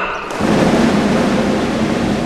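A large crowd applauding in a hall. The clapping breaks out suddenly about a third of a second in and keeps up as a loud, even wash of sound.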